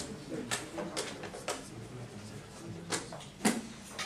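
Lecture-hall noise from a class settling down: scattered short knocks and clicks over a faint murmur of voices, the loudest knock about three and a half seconds in.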